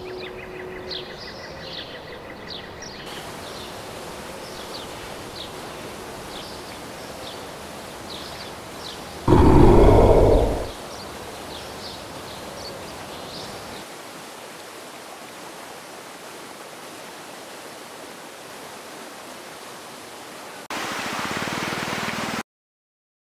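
Outdoor ambience: a steady rushing noise with birds chirping. About nine seconds in, a loud, deep roar falls in pitch and lasts about a second and a half.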